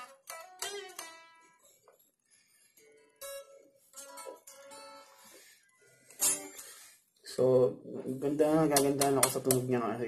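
Electric guitar played unplugged, so only the bare strings sound: a few single notes picked and left to ring, then a sharp strike on the strings about six seconds in. A man's voice follows near the end.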